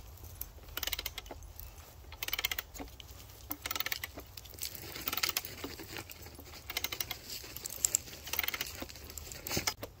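Ratchet handle being worked back and forth to turn a screw-type log splitter into the side grain of a log, its pawl clicking in short irregular runs. The screw is not gaining grip: its threads are pulling the soft, punky wood out.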